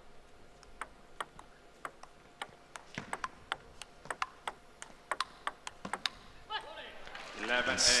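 Table tennis rally: the plastic ball clicking sharply off rackets and table in a quick, fairly even series of about three ticks a second, stopping about six seconds in when the point ends.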